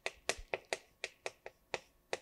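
Chalk tapping and clicking against a chalkboard as handwritten characters are written, about eight short, sharp taps at uneven spacing.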